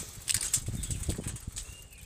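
A bicycle ridden over rough, rutted dried mud: irregular knocks and rattles over a low rumble, with a loud burst of hiss about a third of a second in.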